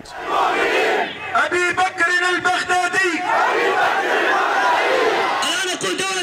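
A large crowd of men shouting and chanting together, many voices raised at once in a rhythmic chant.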